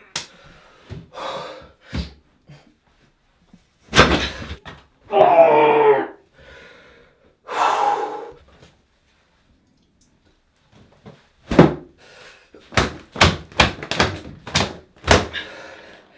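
A man's fists thumping against a bathroom door in an angry outburst, with a short strained cry in the middle. Near the end comes a quick run of about eight blows, each under a second apart.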